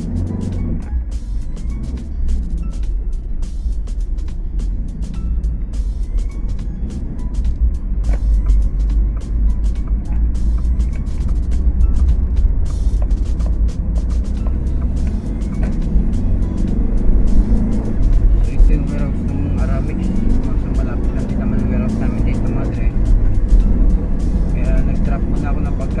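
Car cabin noise while driving: a steady low road and engine rumble, with music with vocals playing over it.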